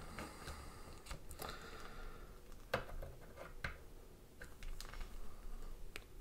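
Faint handling noise from a plastic action figure being held and its soft hood pinched and shifted by fingers, with a few soft clicks and rustles, about three of them spread through the middle.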